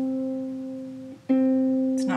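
One string of a Marini Made 28-string bass lap harp is plucked and rings and fades. About a second in it is damped, then plucked again at the same pitch and left ringing, as it is checked during tuning.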